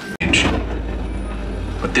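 A film soundtrack played over loudspeakers in a darkened room: a low, steady rumble that begins abruptly just after the start, just before a narrator's voice comes in.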